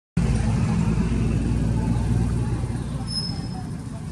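Low rumble of a motor vehicle's engine, loud at first and fading over a few seconds, with faint voices in the background.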